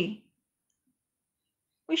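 Narrator's voice reading a Bengali story: a phrase ends just after the start, then a pause of near silence, and speech resumes near the end.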